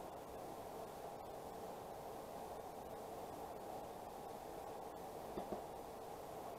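Quiet, steady background hiss of room noise, with one faint tap about five and a half seconds in.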